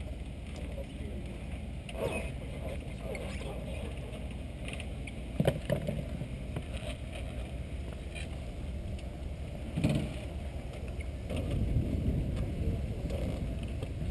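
Steady low outdoor rumble with a few short knocks, about two seconds in, around the middle and about ten seconds in, and faint voices. The rumble grows louder near the end.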